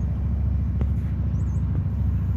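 Steady low engine rumble, typical of a motor vehicle idling, with a faint click about a second in.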